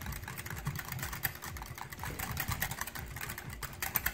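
Wire balloon whisk beating raw egg white in a glass bowl: a rapid, uneven run of light clicks and taps as the wires strike the glass.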